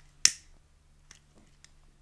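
A cigarette being lit: one sharp strike about a quarter of a second in, fading quickly, followed by two faint clicks.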